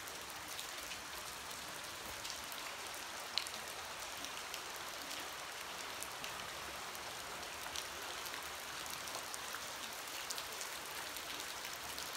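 Steady rushing of a fast-flowing, shallow creek over rock ledges and riffles, with a few light clicks, the sharpest about three seconds in.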